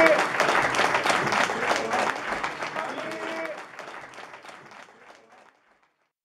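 Audience applauding, with a few voices over the clapping, fading out steadily to silence over about five seconds.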